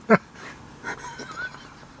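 Men laughing: two short loud bursts of laughter at the start, then quieter laughter.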